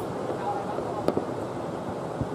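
Distant fireworks and firecrackers going off across a town: a steady haze of crackle with a few sharp cracks, the sharpest about a second in.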